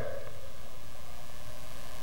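A pause in the speech: a steady, even hiss of room tone and background noise.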